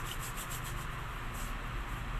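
Hands rubbing together, a continuous rough rubbing noise.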